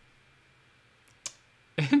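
Near silence of room tone, broken by one short sharp click a little over a second in, then a person laughing just before the end.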